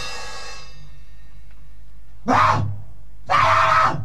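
Lo-fi grindcore/noisecore band recording at a brief break: the wall of distorted noise and drums rings out and fades within about half a second to a low hum. Two short, loud bursts of band noise follow, about two seconds in and again near the end.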